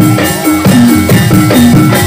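Javanese gamelan accompaniment for Barongan: fast, evenly spaced strikes of bronze keyed and gong instruments, about four a second, with two low notes alternating, over kendang drumming.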